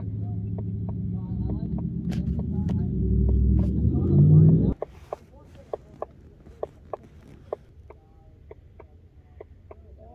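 Ford Shelby GT500's supercharged V8 running with a low rumble that grows louder and briefly rises in pitch, then cuts off abruptly about halfway through. A scatter of sharp clicks follows.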